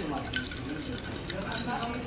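A drink being stirred with a plastic straw in a glass mug, giving a few light, separate clinks against the glass.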